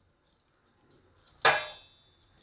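A single sharp clink against a stainless-steel mixing bowl about one and a half seconds in, with a short high ring fading after it; before it, near silence.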